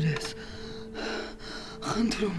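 A woman gasping for breath: short, breathy gasps about a second apart.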